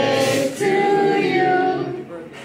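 A group of people singing a birthday song together in unison, holding long notes, with a short break about half a second in.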